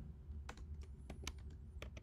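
Faint typing on a computer keyboard: a few separate key clicks as short text is typed.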